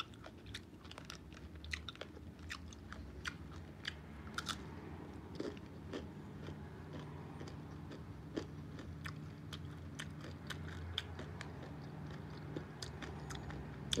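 A person chewing and biting into crunchy fried food, with many small, irregular crunches and mouth clicks.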